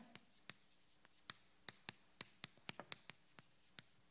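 Chalk writing on a chalkboard: a faint, irregular series of short taps as the chalk strikes and strokes the board.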